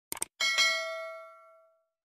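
Two quick clicks, then a bright bell ding, struck twice in quick succession, that rings and fades over about a second: the subscribe-button and notification-bell sound effect.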